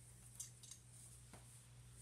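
Near silence with a low steady hum, broken by a few faint clicks of a plastic doll and its cloth coat being handled.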